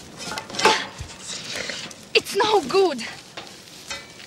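A man's voice shouting a few short calls that fall in pitch, about two to three seconds in, over rustling.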